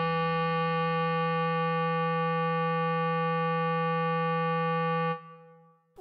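Bass clarinet holding the final long note of the melody at one steady pitch, fading out about five seconds in.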